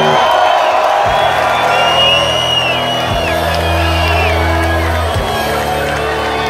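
Live rock band playing through a festival PA, loud and steady: held guitar and bass chords, each changing on a drum hit about every two seconds. Crowd whoops ride on top.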